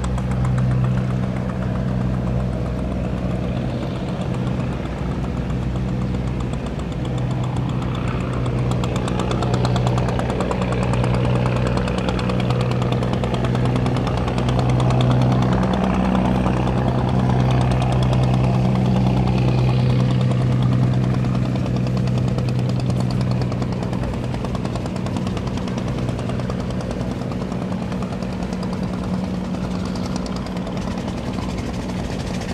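A boat engine running steadily with a low drone, a little louder in the middle and easing off toward the end.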